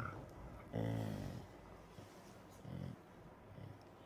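A dog making two short, low vocalizations. The first comes about a second in and lasts about half a second; the second is briefer and comes past the halfway point.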